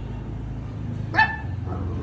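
A dog barks once, about a second in, over the low steady drone of an aeroplane flying overhead.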